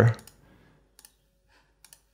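Computer mouse clicks: a short click about a second in and another just before the end.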